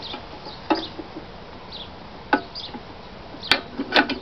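Chickens clucking in short, scattered calls, with a few sharp clicks, the loudest about three and a half seconds in.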